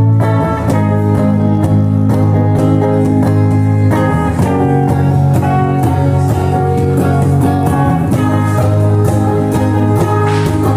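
Live band playing an instrumental stretch between sung lines, led by electric guitars over a steady low bass line.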